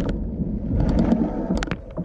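Mountain bike rolling fast over a gravel dirt trail, with a heavy wind rumble buffeting the microphone and scattered sharp clicks and rattles from the bike and the stones under the tyres.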